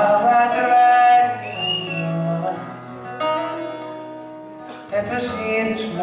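Live male singing with instrumental accompaniment, a slow song of long held notes. The music falls quieter in the middle and swells back about five seconds in.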